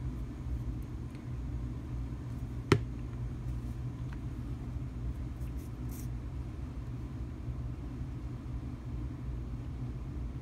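A steady low room hum, with one sharp click about three seconds in and a few faint ticks as two-part epoxy bottles and caps are handled on a tabletop.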